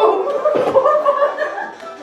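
Men laughing hard and without a break, fading near the end.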